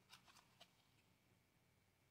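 Near silence, with a few faint light clicks in the first half second from a stack of trading cards being shuffled through by hand.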